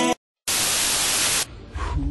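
Music cuts out into a split second of dead silence, then a burst of loud, even static hiss about a second long stops abruptly, leaving a quiet low rumble near the end.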